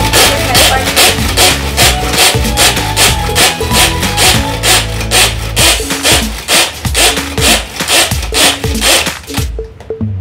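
Hand-pull cord food chopper worked rapidly, each pull of the string spinning its blades with a rasping whirr, about two pulls a second, stopping shortly before the end, over background music.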